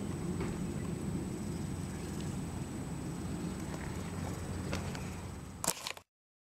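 Steady low background rumble with a few faint clicks, and a sharper click just before the end.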